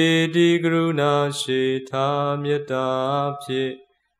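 A male voice chanting Buddhist verses on low, steady held notes, in phrases with short pauses for breath about two seconds in and near the end.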